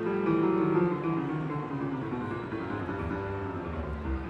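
Solo piano played live: a run of notes and chords that grows slightly softer in the second half.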